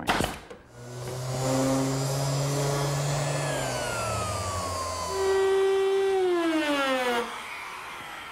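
A single shot from a pneumatic nailer, then a compact laminate trimmer router with a roundover bit running on redwood trim. Its pitch falls as it winds down, it comes back in louder about five seconds in, and it winds down again near the end.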